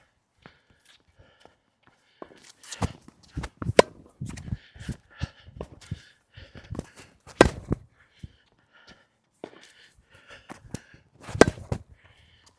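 Tennis rally on a hard court: the near player's racket, strung with Tourna Big Hitter Silver 7 Tour, strikes the ball with sharp pops about every four seconds, the loudest near the end. Fainter hits and bounces from the far side of the net, with footsteps between the shots.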